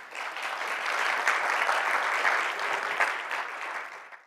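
Audience applauding: the clapping builds up in the first half-second, holds steady, and tapers off near the end.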